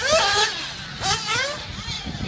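Small glow engine of a nitro RC buggy revving hard in two bursts about a second apart, each a high whine that climbs and falls in pitch as the buggy accelerates and lifts off.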